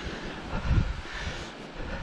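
Outdoor wind rumbling on the camera microphone while walking across mown grass, with a couple of low thumps.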